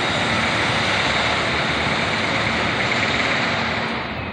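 A motor vehicle passing close by: a steady rush of engine and road noise that holds for about four seconds and fades near the end.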